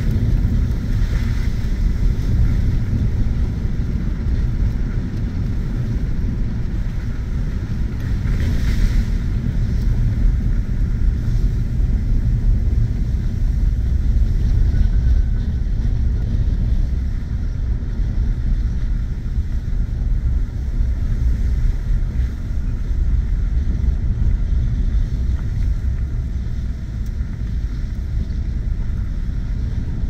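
Ford F-150 pickup truck driving slowly on a dirt road, heard from inside the cab: a steady, low engine and tyre rumble.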